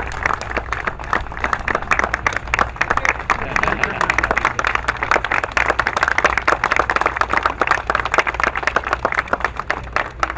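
An audience applauding: dense, steady clapping from many hands, with a low steady hum beneath.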